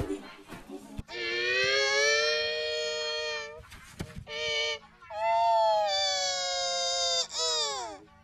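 A distorted, pitch-shifted voice holding long wailing notes: two long held notes with a short one between, the last sliding steeply down near the end.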